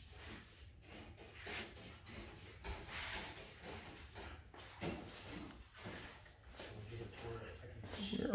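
Faint, indistinct voices talking in the background.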